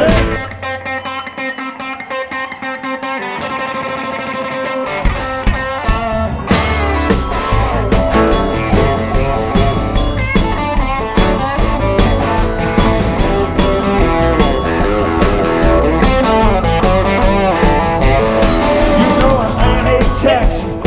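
Live rock band playing an instrumental passage with electric guitar to the fore. Just at the start the band drops back to a sparse guitar part, and the low end and then the full band come back in about five to six and a half seconds in.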